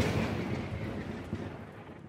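The rumbling tail of a deep cinematic boom, fading away steadily over about two seconds.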